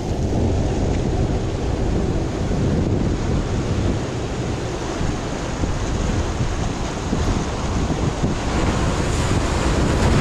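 Surf breaking and washing over shoreline rocks, with wind buffeting the action camera's microphone: a steady rough rush, heaviest in the low end, turning hissier near the end.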